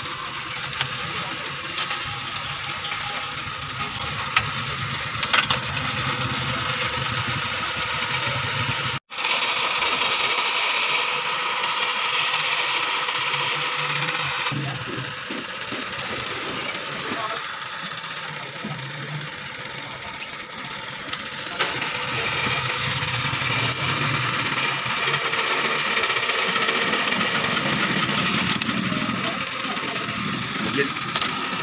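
Cylinder boring machine running on an engine block, its boring head cutting the cylinder bore with a steady mechanical noise. The sound breaks off for an instant about a third of the way in, then carries on with a changed tone.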